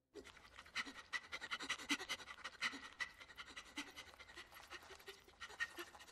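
A cartoon slug monster panting quickly and faintly, a run of short breaths several a second, out of breath from its long crawl to class.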